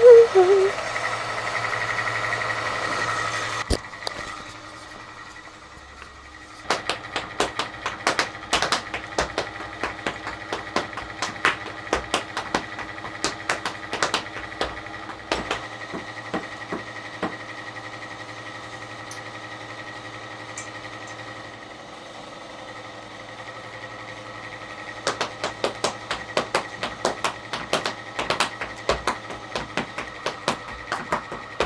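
Irish dance hard shoes (heavy jig shoes) striking a hard studio floor in rapid, rhythmic clicks and taps. The taps start about a fifth of the way in, ease off for several seconds past the middle, and pick up again near the end.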